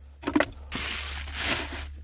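Packaging being handled: plastic and paper wrapping rustling and crinkling for about the second half, over a steady low hum.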